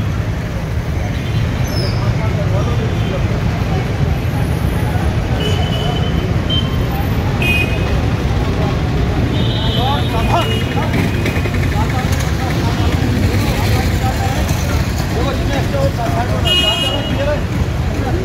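Road traffic at a busy junction: a steady rumble of passing vehicles, broken by several short vehicle horn toots, mostly in the middle and again near the end.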